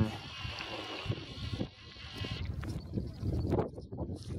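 A faint, wavering high-pitched animal call lasting about two seconds, then irregular scuffs and rustles of footsteps through dry brush.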